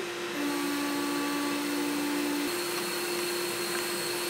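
XcelVap nitrogen blow-down evaporator starting its run: a steady rushing hiss of gas flow and venting comes on a fraction of a second in, with a low steady hum for about the first two seconds.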